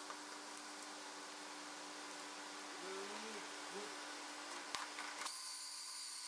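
Quiet workshop room tone with a low steady hum. About halfway through there are two short, faint whines that rise and fall, and a single click follows shortly before the end.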